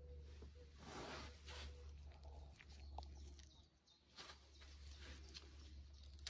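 Near silence: a low steady hum with a few faint, brief rustling handling sounds.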